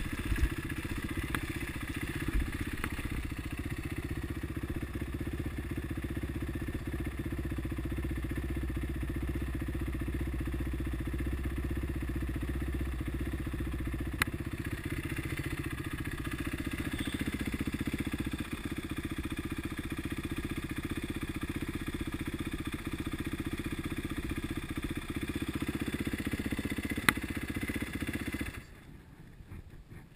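Kawasaki KLX450 dirt bike's single-cylinder four-stroke engine running at low, steady revs, with a couple of sharp clicks, then stopping suddenly near the end.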